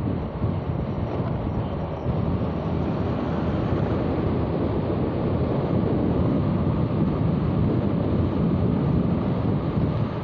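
Steady wind rush on the microphone of a moving motorcycle, with the motorcycle's engine and road noise running underneath.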